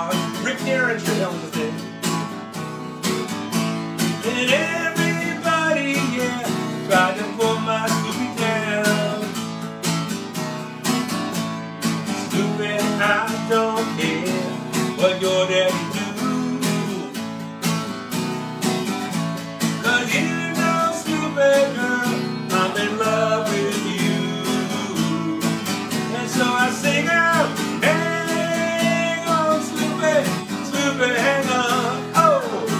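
Acoustic guitar strummed in a steady rhythm while a man sings along into a microphone.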